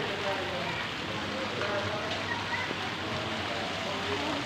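Steady, even hiss of rain falling on the ground, with voices faint over it.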